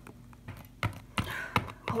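A few light clicks and taps of small plastic Littlest Pet Shop figures being handled and set down on a tabletop, over a faint steady hum.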